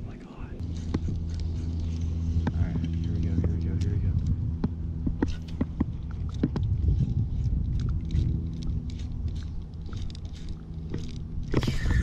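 A steady low motor hum that starts about half a second in and holds level, with scattered sharp clicks and ticks over it.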